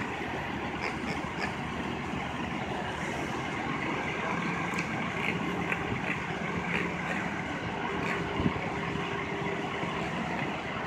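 Steady city-street background of idling engine rumble and traffic, with a low steady hum that settles in about four seconds in and a single brief knock near the end.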